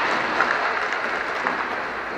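Reverberant noise of inline hockey play in a large hall: hard skate wheels rolling on the rink floor, with a few faint knocks of sticks or puck. The din slowly eases off.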